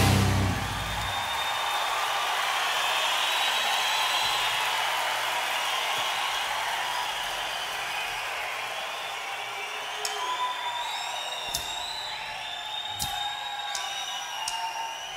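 Concert audience applauding and cheering, with whistles, as the band's final chord cuts off in the first second; the crowd noise slowly fades.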